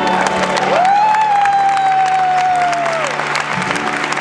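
A live vocal group's song ending on one long held high note that eases slightly down before it stops about three seconds in, over the audience's applause.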